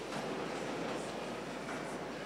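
Steady low background noise of a large hall, with no speech: room tone.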